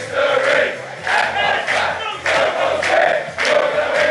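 A crowd of football supporters, all men, chanting and shouting together in loud repeated bursts, led by men standing above the crowd.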